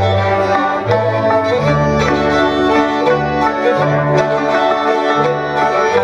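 Cimbalom band playing a folk tune: fiddle over the hammered strings of a cimbalom, with a bass line that steps to a new note about once a second.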